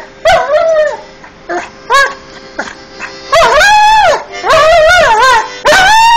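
Irish Setter howling ('singing'): a few short yips and rising-falling cries in the first three seconds, then three long wavering howls of about a second each.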